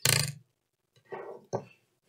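Brief handling sounds from hands working inside an open laptop: a short noisy burst at the start, then a softer rustle and a sharp click a little past halfway.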